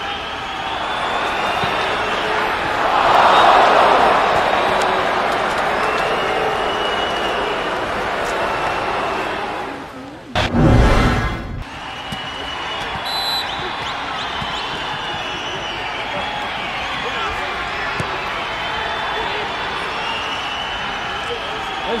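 Players shouting and calling to each other over the steady background noise of an outdoor soccer game, with a louder swell of voices about three seconds in. About halfway through, a loud low rumble lasts about a second.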